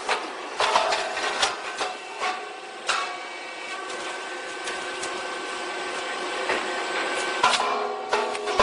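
Four-mold rice cake popping machine cycling. Sharp knocks and clatter in the first three seconds as the puffed cakes are ejected, then a steady mechanical hum, then more knocks near the end as the feed tray moves fresh grain into the molds.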